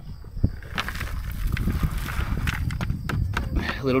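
Dry, dusty chicken manure poured from one plastic bucket into another: a knock of the bucket near the start, then a couple of seconds of the loose material sliding and pattering in.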